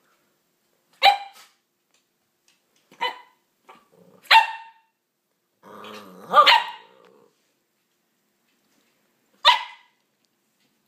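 A dog barking five times in short, sharp, high-pitched barks spaced one to three seconds apart. A low growl comes just before and during the fourth bark.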